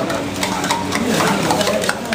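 Busy eatery-kitchen background: a steady low hum with scattered light clinks of steel dishes and faint indistinct voices.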